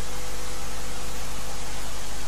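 Steady background hiss with a faint low hum underneath, even and unchanging.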